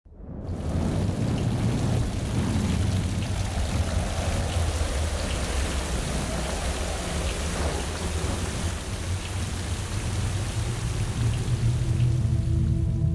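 Rain sound effect: steady rainfall with a deep rumble of thunder underneath, fading in over the first half second.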